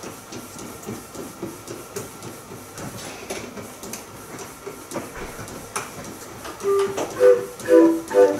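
Low rustling with a few sharp clicks, then about seven seconds in a self-built 20-note Busker street organ starts to play from its punched-paper music, its pipes sounding clear whistly notes.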